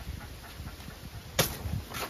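A hand blade chopping into a banana leaf stalk, one sharp crack about one and a half seconds in, followed by a couple of fainter knocks.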